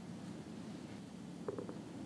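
Faint, steady low background rumble of room ambience, with a couple of light clicks about one and a half seconds in.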